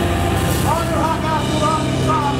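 Steady low drone from the bass and stage amplifiers, held between songs, with a voice rising and falling over it.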